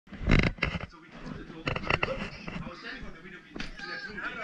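Indistinct people's voices, with a loud thump about a third of a second in and a few sharp knocks around two seconds in.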